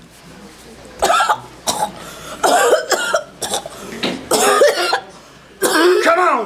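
A woman coughing hard in a series of harsh, voiced coughing fits, about six in all, spaced through the few seconds.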